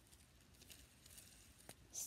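Near silence with faint handling ticks from a plastic pop-it fidget spinner, and one light click near the end.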